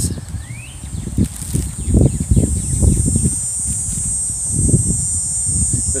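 Gusty wind buffeting the microphone in irregular low rumbles. A steady high insect buzz comes in about a second in and holds.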